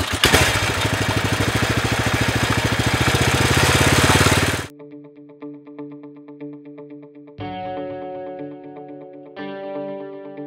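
Baja off-road car's small engine running hard with its CVT belt and pulleys spinning, a loud, even rapid pulsing that grows a little louder before cutting off abruptly about four and a half seconds in. Guitar music with effects follows.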